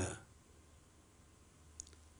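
A pause in a man's speech: faint steady room tone, with the end of his last word trailing off at the start and one small click, like a lip or mouth click, just before he speaks again.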